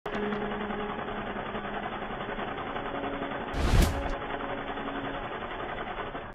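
Channel intro sound effects: a steady, rough, noisy rumble with a faint low hum, and a single hit with a whoosh a little over halfway through, the loudest moment.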